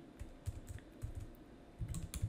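Quiet typing on a computer keyboard: a few scattered keystrokes, more of them bunched together near the end.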